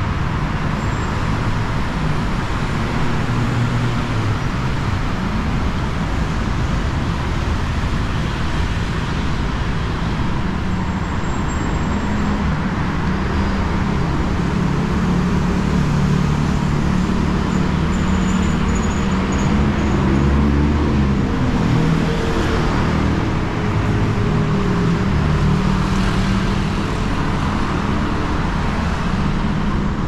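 Steady road traffic from a busy multi-lane road: cars and heavy vehicles passing, with a continuous low engine rumble that swells somewhat midway through.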